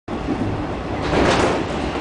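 Running noise inside a JR 113 series commuter car (KuHa 111), a steady rumble of wheels on track. About a second in, a louder rushing swell rises as the Sunrise Seto/Izumo sleeper train passes close alongside in the opposite direction.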